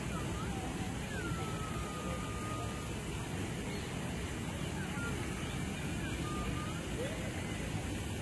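Outdoor street ambience: a steady low rumble like traffic, with faint distant voices and a few faint brief whistle-like glides.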